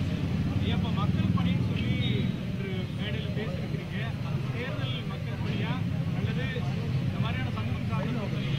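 People's voices talking, with a steady low rumble underneath.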